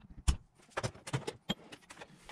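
A new bearing being tapped home into an alternator end housing to make sure it is fully seated: one firm knock near the start, then a string of lighter taps, one with a brief metallic ring about one and a half seconds in.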